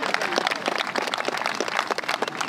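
Crowd applauding: a dense patter of many hand claps.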